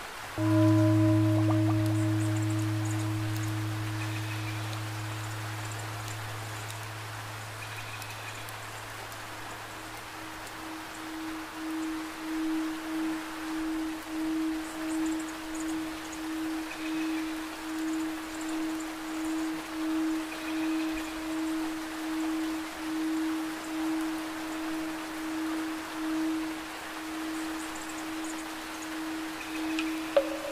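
Meditation music: a deep, long-ringing tone with a higher tone above it starts suddenly about half a second in. The deep tone slowly fades away over about ten seconds. The higher tone holds on and then wavers in a slow pulse about once a second, over a steady bed of rushing water sound.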